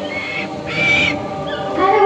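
White-bellied sea eagle calling: two short, high, even notes about half a second apart.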